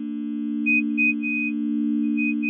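Synthesized intro drone: a steady low electronic tone, slowly swelling, with a few short high beeps over it in the second half.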